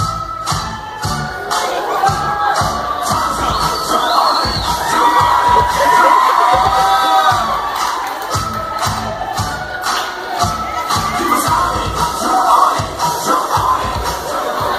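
Dance music with a steady beat playing over a crowd of guests cheering and shouting, the cheering loudest around the middle.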